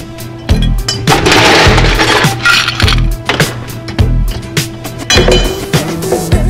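Ice cubes clinking and rattling as they are scooped into a martini glass to chill it, densest from about one to three seconds in, over background music with a steady beat.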